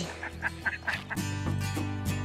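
Ducks quacking in a quick run of short calls, then strummed acoustic guitar music comes in about a second in.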